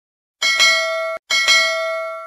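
Notification-bell sound effect rung twice about a second apart, a bright bell tone with several ringing pitches, the first ring cut off short as the second begins.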